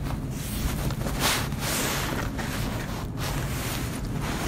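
Supermarket background with a steady low hum, overlaid by rushing, rustling handling noise on the phone's microphone as it moves over a shopping basket, with a brief louder swell about a second in.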